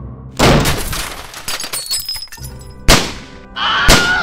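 A loud crash of something breaking and shattering about half a second in, trailing off with clattering, then two sharp bangs about a second apart near the end, with music coming in under the last one.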